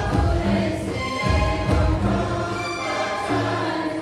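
A group of young men singing a Hindi Christian hymn together, one voice carried on a microphone, with a hand-played barrel drum beating under the singing.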